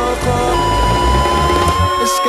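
Band playing an instrumental passage of a rock song between sung lines, with bass and drums underneath and a long held high note coming in about half a second in.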